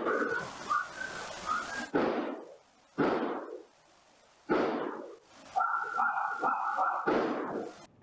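Surveillance-camera audio, noise-reduced and boosted: a series of sudden bangs, each dying away, which a forensic audio expert identifies as gunshots. Between them, in background hiss, come short higher-pitched sounds that are hard to tell as animal or human.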